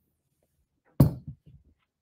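A man sneezing once about a second in, a sudden loud burst that fades quickly, followed by a fainter sniff or breath.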